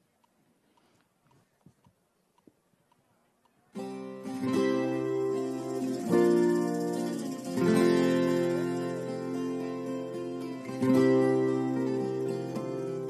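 A few seconds of near silence with faint clicks, then a live band starts a slow sertanejo ballad intro about four seconds in: acoustic guitar chords over a steady low bass, the chords changing every couple of seconds.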